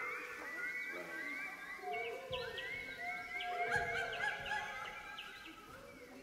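A large youth choir making bird-like calls: many short rising calls overlap in a dense, irregular chorus, then thin out and fade toward the end.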